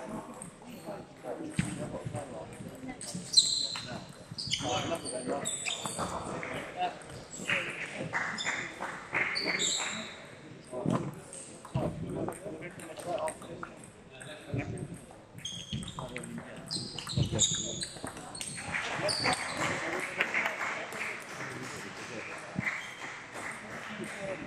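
Indistinct voices in a large echoing sports hall, with sharp clicks of table tennis balls striking tables and bats scattered throughout; the loudest click comes about three seconds in.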